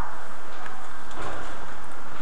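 Steady hiss from the recording microphone, with a couple of faint computer mouse clicks as a menu item is chosen.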